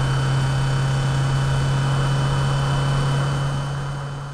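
A car engine idling with a steady low hum, fading out near the end.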